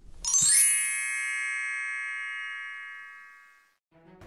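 A bright chime struck once, ringing with many overtones and slowly fading away over about three seconds: an intro sound effect for a channel logo. A brief low sound comes just before it.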